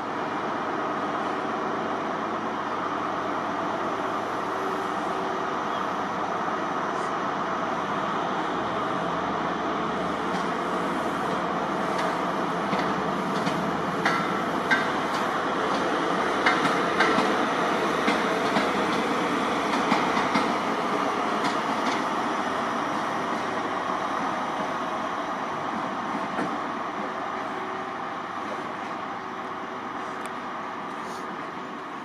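ScotRail High Speed Train (InterCity 125) with Class 43 diesel power cars passing slowly, engines running and wheels clicking over rail joints and pointwork. The sound swells in the middle and eases off toward the end.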